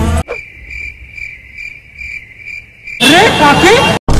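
Crickets chirping in an even pulse, about two and a half chirps a second, after music cuts off. About three seconds in, loud music with a voice cuts in over them.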